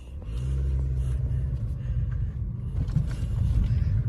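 Toyota car driving, its engine hum and road rumble heard from inside the cabin, growing louder just after the start and then holding steady.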